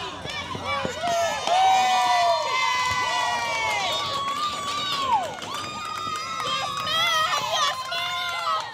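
Crowd yelling and cheering, many high voices overlapping in long drawn-out shouts, loudest about a second and a half in.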